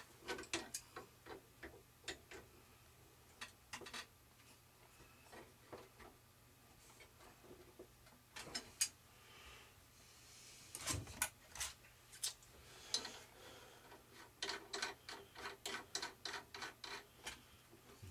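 Scattered light clicks, taps and rubbing as a wooden propeller is fitted back onto an RC plane's brushless motor by hand, with a quicker run of small clicks near the end as it is fastened with a small tool.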